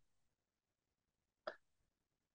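Near silence: room tone during a pause in speech, broken once about one and a half seconds in by a very brief short sound.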